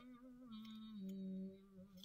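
A person softly humming a few held low notes, the pitch stepping down about a second in.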